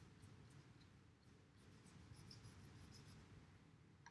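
Near silence: a wet paintbrush faintly stroking water onto watercolor paper, with scattered soft ticks from the bristles over a low steady room hum.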